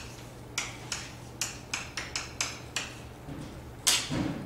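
Chalk writing on a blackboard: a quick, uneven series of short taps and scrapes as symbols are written, with a louder knock just before the end, over a low steady room hum.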